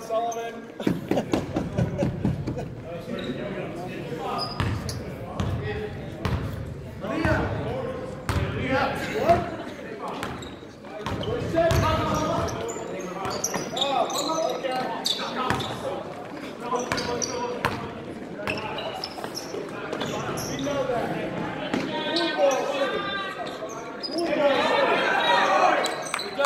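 Basketball bouncing on a hardwood gym floor during play, a run of sharp knocks in the first few seconds and more scattered through, with players' indistinct shouts and calls. Everything echoes in the large gymnasium, and the voices grow louder near the end.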